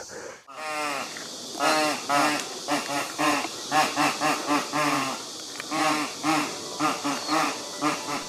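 Two homemade bamboo pipes, each sounding through a carved vibrating reed, played together as a duet: a run of short, wavering notes that bend in pitch, starting about half a second in.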